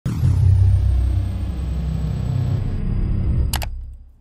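Channel intro sound effect: a loud, deep bass rumble with a high tone gliding down at its start and a short sharp burst near the end, then fading out.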